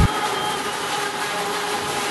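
Log debarker and sawmill machinery running, a steady mechanical noise with a constant whine held on a few pitches.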